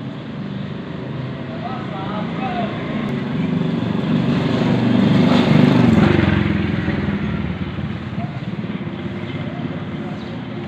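A motor vehicle passing close by on the street, its engine growing louder to a peak about halfway through and then fading away.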